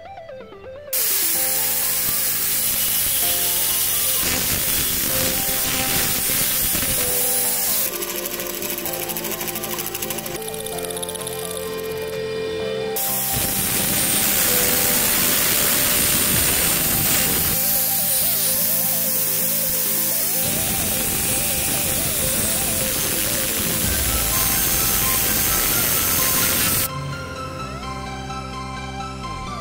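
Angle grinder with an abrasive disc cutting through a steel bar, a loud harsh grinding noise that starts about a second in and stops shortly before the end.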